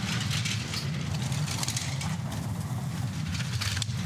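Two-man bobsleigh sliding down the ice channel at high speed: a steady low rumble of the steel runners on the ice with a hiss above it.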